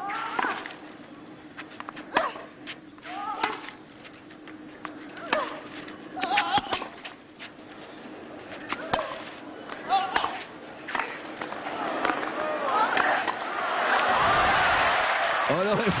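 Tennis ball struck back and forth with rackets in a rally on a clay court, a sharp hit every second or two, some hits joined by short vocal sounds. From about twelve seconds in, the crowd noise swells loudly as the point ends.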